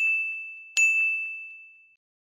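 Bell-like chime of a logo sting: a note struck just before, still ringing, and a second struck just under a second in. Each is one high, clear tone that fades away, dying out near the end.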